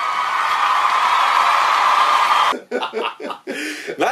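An edited-in sound effect under a title card: a loud, hissing swell with a few steady tones in it, which cuts off suddenly about two and a half seconds in, followed by men laughing.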